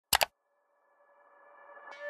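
Two quick, loud electronic beeps right at the start, then soft music with held tones fading in and growing steadily louder.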